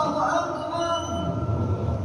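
The last note of a muezzin's amplified adzan phrase glides and fades out in the first half-second, leaving a pause filled with low rumbling room noise.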